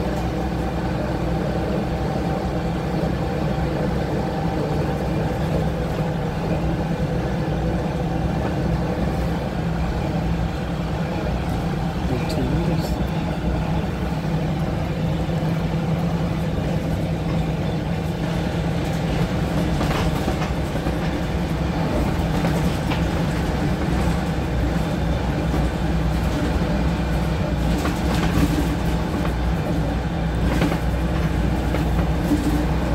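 Wright-bodied Volvo bus running, heard from inside the saloon: a steady engine drone with a few sharp knocks and rattles, spread through the run, from fittings that the uploader reports as faulty, with loose seats and a floor that moves.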